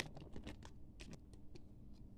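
Light, scattered clicks and taps as puffed snack sticks tip out of a packet and land on a tray, faint and irregular.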